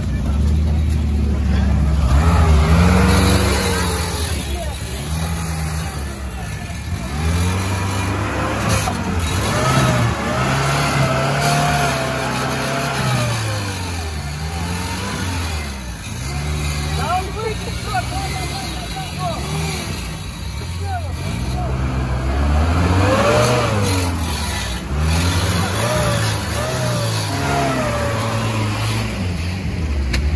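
UAZ off-road vehicle's engine revving up and down over and over as it works through deep mud, with people's voices over it.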